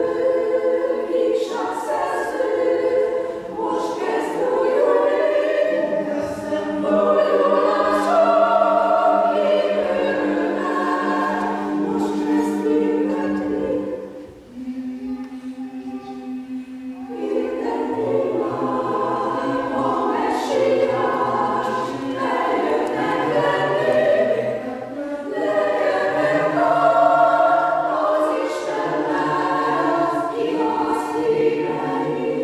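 Mixed choir of women's and men's voices singing a cappella in several parts, with long held notes in the lower parts. About halfway through the sound thins briefly to a few held notes, then the men's low voices come in and the full choir carries on.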